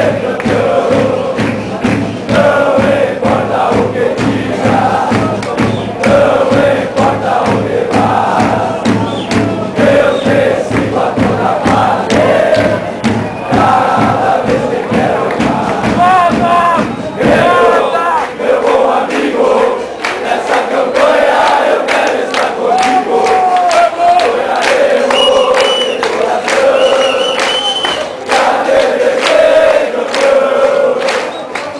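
A football crowd in the stands singing a terrace chant in unison, many male voices together. A steady pounding beat runs under the singing and drops out a little past halfway, leaving the voices alone.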